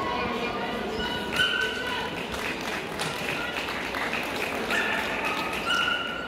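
Dogs barking, several short high-pitched barks over a steady hum of people talking in a large hall.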